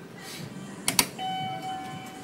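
Elevator push button pressed, giving a quick double click about a second in, followed by a steady electronic chime tone that sounds for about a second.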